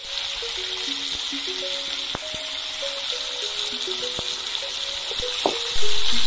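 Pork frying in hot oil in an iron kadai, a steady sizzling hiss, under a slow background music melody of single held notes. A few sharp clicks come through about two seconds in, about four seconds in and near the end.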